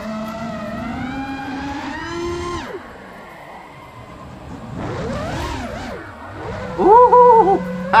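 FPV freestyle quadcopter's brushless motors and propellers whining, the pitch rising and falling with throttle: a sharp rising whine about two seconds in that drops away, a quieter stretch, then climbing again. Near the end comes a short, much louder wavering tone and a sharp burst.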